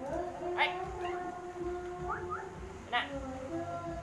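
A perched black eagle gives two short, sharp calls, one about half a second in and one about three seconds in. A voice sings steadily in the background.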